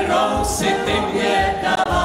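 Czech brass band playing a lively song, with several vocalists singing together over the brass and a steady bass beat about twice a second.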